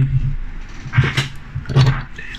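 A man's voice in two short wordless hums, with light clicks as small die-cast metal toy cars are handled and set down.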